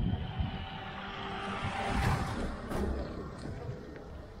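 A car driving past close by on an asphalt road, its tyre and engine noise rising to a peak about two seconds in and then fading away.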